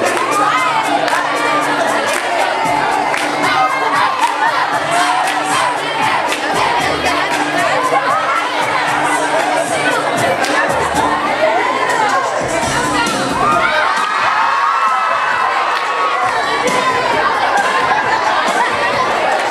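A young audience screaming and cheering, many high voices overlapping loudly and without a break.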